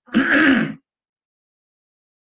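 A man clearing his throat once, a short rasping sound within the first second; his throat is sore from a cold.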